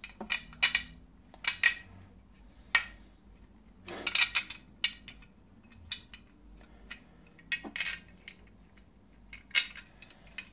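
Steel bolts clinking against a steel box-section rail bracket as they are slid into its holes and the part is handled: irregular sharp metallic clinks with short rings, some louder knocks among them.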